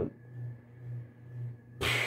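Low steady hum of a ceiling fan running in a small room, with a faint thin tone over it; a short hiss near the end.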